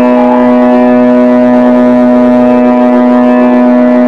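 Hindustani classical violin holding one long, steady note in raga Shyam Kalyan.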